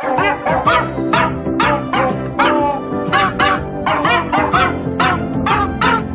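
A small dog's single bark, a miniature American Eskimo dog's, sampled and replayed at changing pitches about three times a second to play a tune over a musical backing: a 'bork' remix.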